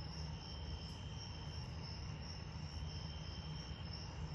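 Steady, high-pitched chorus of night insects trilling on and on, with a faint low rumble underneath.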